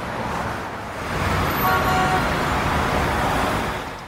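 Road traffic noise: a steady rush of cars passing on a busy multi-lane road, swelling about a second in and easing off near the end.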